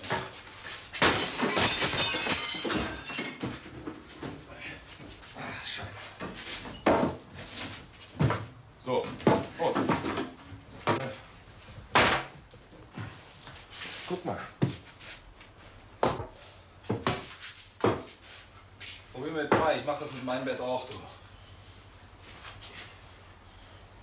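Repeated hard blows of a long-handled tool against a barred window frame, a string of separate knocks and thuds, with a loud crash of breaking glass about a second in.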